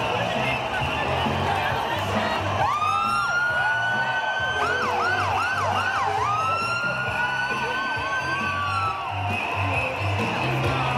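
A siren wails up to a long, high, held tone about a quarter of the way in. Halfway through it breaks into several quick up-and-down yelps, then holds again until near the end. Under it is music with a steady bass beat and crowd noise.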